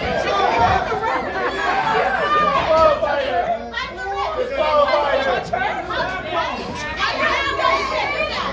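Crowd of fans talking and shouting over one another, many overlapping voices with no single speaker standing out.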